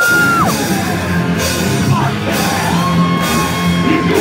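Horror-punk band playing live: loud distorted guitars, bass and drums come in together at the start. A long held high note glides down and away just after the start, and another is held through the second half, falling away at the end.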